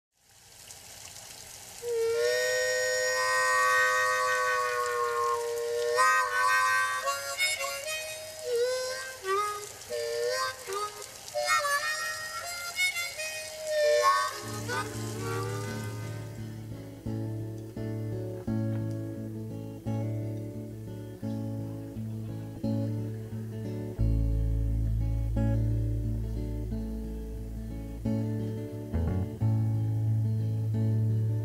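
Solo harmonica playing a slow melody with bent, sliding notes. About halfway through, acoustic guitar takes over, strumming a steady chord pattern as the intro to a country ballad.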